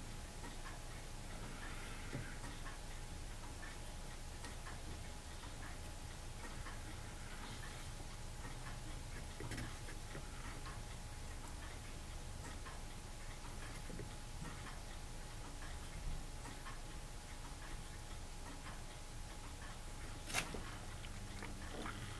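Faint steady hum with light, irregular small clicks and taps, and one sharper click near the end: a small paintbrush or tool being handled while touching up tiny plastic model parts.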